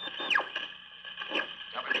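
Shortwave radio sound effect between amateur radio transmissions: a steady whine of several held tones, with a quick falling whistle just after the start.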